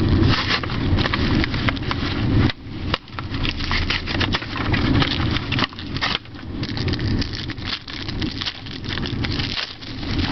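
Foil Yu-Gi-Oh booster pack and plastic packaging crinkling and tearing as they are worked open by hand: a continuous run of crackles and rustles.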